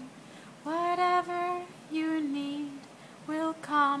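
A woman singing a repeated mantra unaccompanied: slow, held notes in three short phrases.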